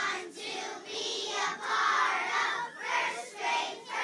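A large group of young children singing loudly in unison, half-shouting the words of a class song in short phrases.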